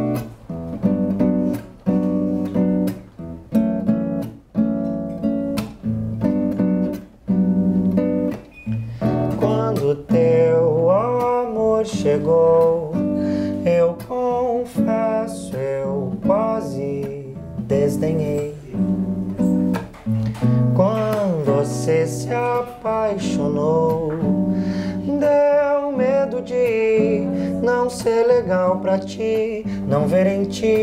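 Acoustic guitar strummed in a steady rhythm of chords, the intro to a song. About ten seconds in, a wordless sung melody joins over the guitar.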